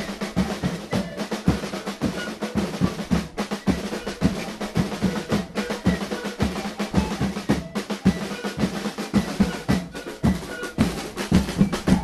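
A carnival drum band playing a fast, steady rhythm on marching drums and snare drums. The drumming stops abruptly at the very end.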